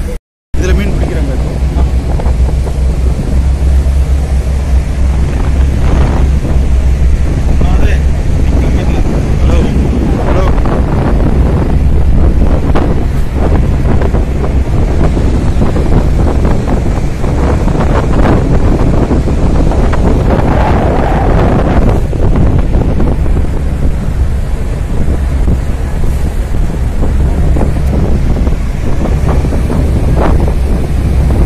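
Ro-ro car ferry's engine running with a steady low rumble, mixed with wind buffeting the microphone and passengers' voices in the background.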